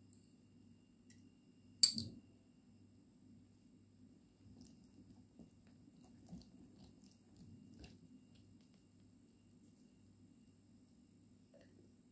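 Quiet room tone with a faint low hum, broken by one sharp click about two seconds in and a few faint ticks later.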